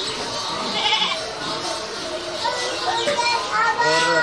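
Background voices and children's chatter, with one long, slightly falling call starting near the end.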